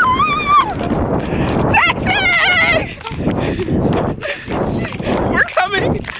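Women's high-pitched excited squealing and laughing, in wavering bursts: one at the start, one about two seconds in and a short one near the end.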